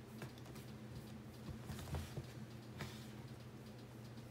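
Faint scattered light taps and clicks from hands handling a leather sneaker and a fine paintbrush while painting, over a steady low hum; the strongest taps come about two seconds in.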